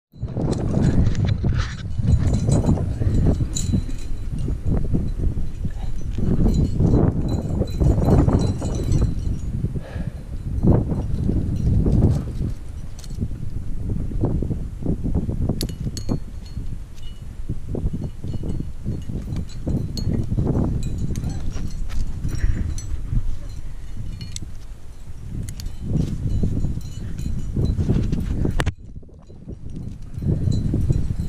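Climbing hardware racked on a harness (cams and carabiners) jingling and clinking as a climber jams up a granite crack, over heavy irregular low buffeting on the camera's microphone. The sound drops away suddenly near the end.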